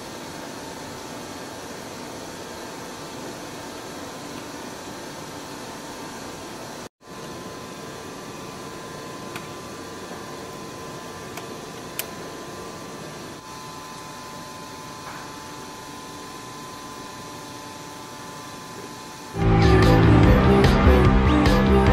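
Steady room hiss and hum like ventilation, with a few faint clicks as metal parts of a pick-and-place tape feeder are handled. The sound drops out briefly about a third of the way in, and loud music starts just before the end.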